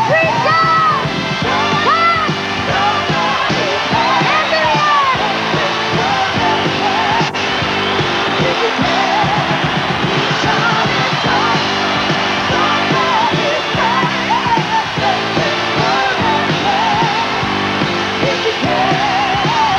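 A woman's lead vocal sung live over a band, with long notes held in a wide vibrato near the start.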